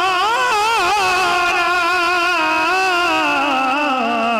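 A man's solo voice singing a devotional naat, drawing out a long held note with wavering ornaments that slide up and down in pitch.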